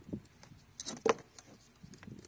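Light taps and scrapes of a multimeter test probe and its leads against a car fuse box, with a sharper click about a second in.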